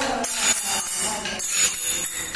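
Wooden kolata sticks clacking together in a group stick dance, a few sharp strikes spaced unevenly, with voices under them.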